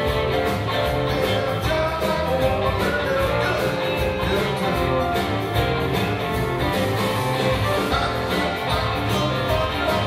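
Live blues band playing: electric guitars, bass, keyboard and drums keeping a steady beat.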